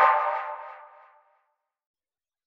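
Electronic logo jingle for a streaming app: a held synthesizer chord fades out over about a second, then silence.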